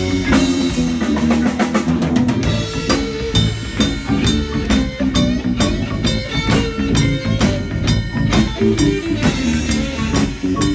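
Live blues band playing an instrumental passage: a drum kit keeping a steady beat with electric bass, keyboard and guitar, and a quick run of drum strokes about a second in.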